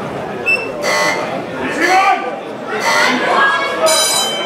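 Crowd chatter in a large hall, with a short high ping about half a second in. Just before the end the timekeeper's signal rings, starting the first round of an amateur boxing bout.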